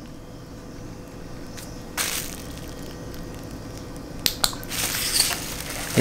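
Plastic bubble wrap crinkling as it is handled, starting about two seconds in and crackling loudest near the end as the sheet is picked up.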